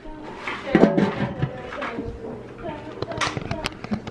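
Indistinct voices in a kitchen, with scattered clicks and knocks.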